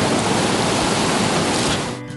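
Turbulent river water rushing steadily, a full, even hiss of churning water that cuts off at the end.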